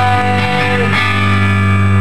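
Live rock music: sustained, distorted electric guitar chords ringing over a steady low note, the chord changing about a second in.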